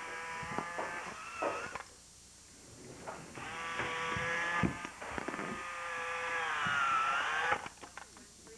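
Robotic toy frog's small electric motor and gears whirring as it moves its legs and body. The whir runs for about two seconds, stops, then runs again for about four seconds, its pitch dipping and rising near the end.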